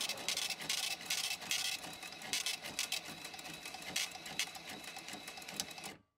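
Checkout-counter sound effects: rapid mechanical clicking and clatter over a few faint steady tones. It starts abruptly and cuts off suddenly at the end.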